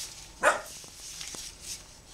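A single short dog bark about half a second in, over the soft rustle of velvet ribbon being folded by hand.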